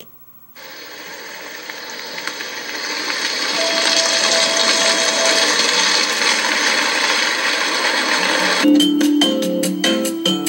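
Sound effect from an interactive story app on a tablet: a dense, static-like hiss starts about half a second in and swells louder over a few seconds, with a short steady tone partway through. Near the end it cuts over to a regular, plucked mallet-percussion tune.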